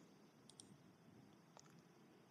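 Near silence with a few faint clicks of a computer mouse: two close together about half a second in, then one more near the end.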